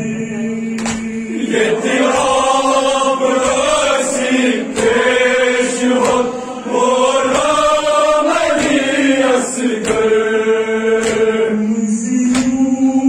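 Voices chanting a Kashmiri nohay, a Shia mourning elegy, the melody rising and falling over a steady held low note, with sharp beats at intervals.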